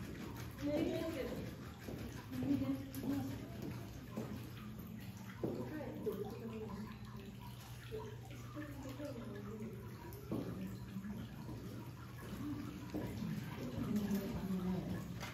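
Indistinct voices of people talking nearby, over a steady low hum.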